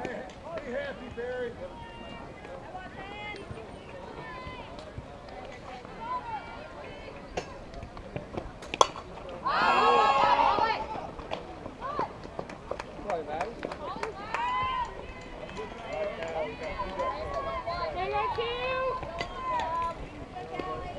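Sharp crack of a bat hitting a fastpitch softball about nine seconds in, followed at once by a burst of spectators cheering and shouting. Scattered distant voices of players and fans before and after.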